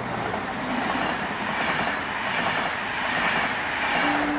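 Double-deck passenger train passing close by at speed, a steady rushing noise of wheels on rails and moving air.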